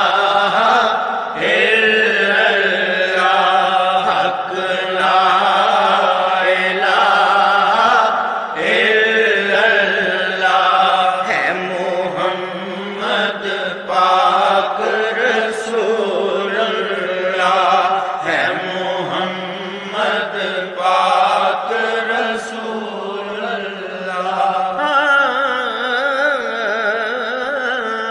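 A solo voice chanting a devotional Arabic poem in long, wavering melodic lines over a steady low drone.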